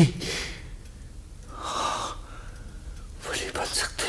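A person's breath, heard twice: two short, noisy gasps or exhalations, one about two seconds in and another near the end.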